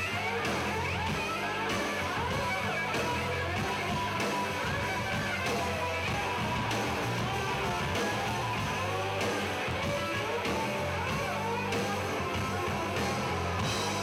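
Live rock band playing: electric guitar over drums and bass guitar, the guitar line bending in pitch.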